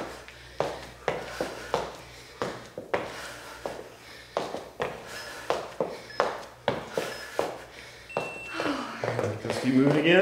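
Athletic shoes landing on a hard studio floor in a quick, regular rhythm of about two steps a second during a lunge exercise. A voice comes in near the end.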